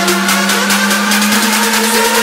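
Electronic dance music build-up: a sustained buzzing synth note that steps up slightly in pitch partway through, under rapid, evenly spaced noise pulses at about seven a second.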